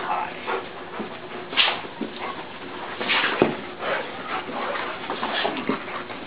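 Dogs whimpering and whining in excited greeting of their returning owner, in short, scattered cries.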